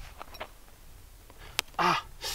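A few faint clicks, then a sharp click about one and a half seconds in, from shot-up lens fragments being handled on the dirt. A short vocal sound from a man follows near the end.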